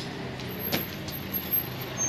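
Steady low background hum with one sharp knock about three-quarters of a second in, followed by a few fainter ticks.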